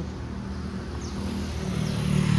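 Street traffic: a passing motor vehicle's engine hum over a steady traffic haze, growing louder toward the end.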